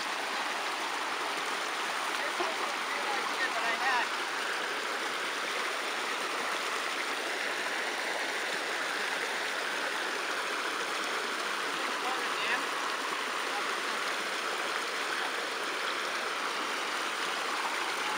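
Small creek water running over rocks and a fallen-log jam in a little cascade, a steady rush of water.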